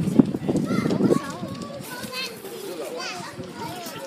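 Children's voices chattering and calling in the background. A burst of low rumbling noise in the first second or so is the loudest part.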